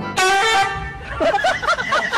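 A loud, short honk-like horn tone as the cat falls over, followed by a person laughing in quick repeated bursts.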